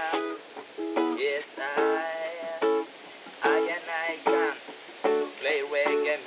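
Small acoustic guitar strummed in short, choppy reggae chord strokes, a stroke a little under every second, each ringing briefly before the next.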